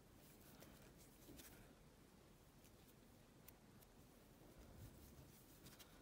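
Near silence, with faint rustling and a few small clicks from a metal crochet hook working white yarn into single crochet stitches.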